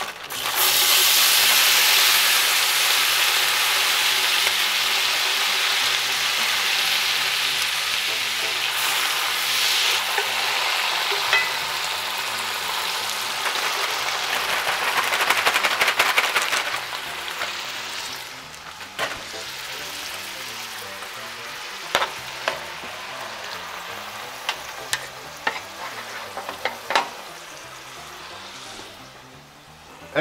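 Chopped peppers and onions and chicken pieces dropped into hot butter and olive oil in a heavy pot, sizzling loudly at once and settling to a quieter, steady frying after about 17 seconds. A few sharp utensil knocks on the pot come in the second half.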